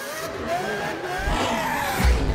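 Sound effect of a car engine revving with its tyres squealing as it skids, several pitches gliding up and down together.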